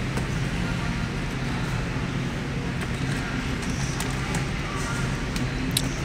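Steady low hum of a supermarket's background machinery, with a few light taps and clicks as cardboard boxes of semolina are lifted off a shelf and stacked.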